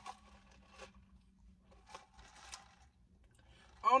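An iced coffee drink sipped through a straw from a plastic cup: a few faint, short scratchy noises of the sip and the cup.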